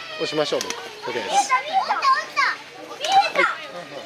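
Young children talking and calling out in high voices, overlapping chatter.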